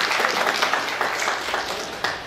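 Audience applauding: a dense, steady clatter of many hands clapping, beginning to die away right at the end.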